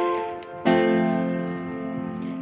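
Yamaha PSR-S970 arranger keyboard playing chords. One chord is fading out when a louder chord is struck about two-thirds of a second in, and that one slowly dies away.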